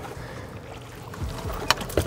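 Outboard motor running low and steady at trolling speed, with faint wind and water noise around the boat and a light click near the end.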